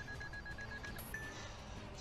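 A steady high electronic tone with a slight pulse, a sound effect or music from the anime episode's soundtrack. It breaks off about a second in and is followed by a short second tone.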